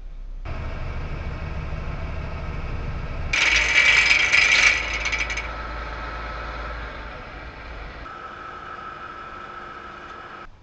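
A work boat's deck winch with wire rope and chain drums, running. A loud metallic rattle lasts about two seconds near the middle, and a steady whine follows toward the end.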